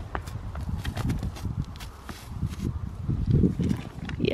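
Horse stepping over hay and frozen ground and nosing up to a handful of treats held close to the microphone: a run of uneven clicks and soft thuds.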